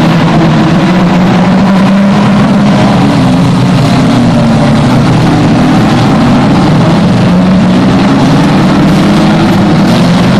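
Several banger racing cars' engines running hard together as the pack races around the oval, loud and continuous, their pitches rising and falling as the drivers accelerate and lift.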